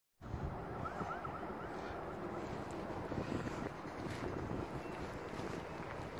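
Wind buffeting a phone's microphone: a gusty, unsteady rumbling noise with no engine or voice standing out.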